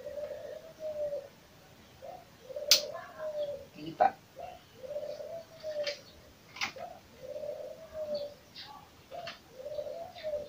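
A dove cooing over and over, each coo a soft low note about a second long that bends slightly downward, repeated every second and a half or so, with a few sharp clicks in between.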